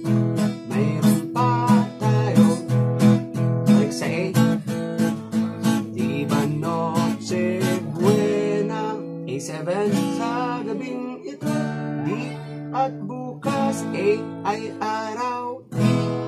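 Acoustic guitar strummed in a steady down-stroke pattern through A, E, A7 and D chords, with a man singing a Tagalog Christmas carol along. The strums come thick and even in the first half and thin out to fewer, held chords in the second.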